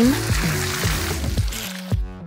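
Whipped cream spraying from an aerosol can in a steady hiss that stops near the end, over background music.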